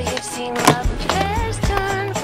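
Skateboard on a concrete quarter pipe, with one sharp clack of the board a little before the middle, under an indie-pop song with singing.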